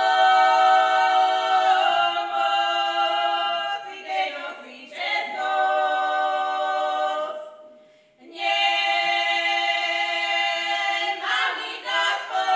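Three women singing a Slovak folk song together a cappella, in long held phrases with short breaks between them, the longest break about eight seconds in.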